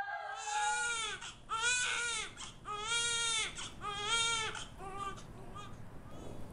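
Newborn baby crying: about five short wails, each rising and falling in pitch, the last ones shorter and weaker.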